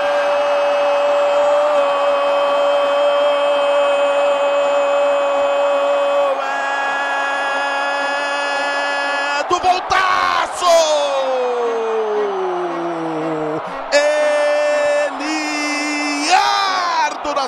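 Football TV commentator's drawn-out goal cry, held on one high note for about six seconds, then another held note, then a long cry falling in pitch, over a stadium crowd cheering.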